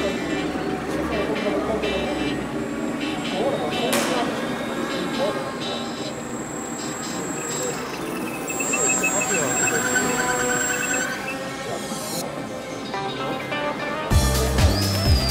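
Many people talking in the background, with the small electric motor and propeller of an indoor foam RC model plane running for a few seconds past the middle as a thin high whine.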